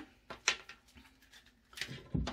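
A few faint, scattered clicks and rustles of a hot air brush's power cord being handled and straightened out.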